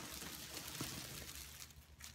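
Clear plastic garment bag crinkling and rustling as the dress inside it is handled and lifted out, easing off near the end.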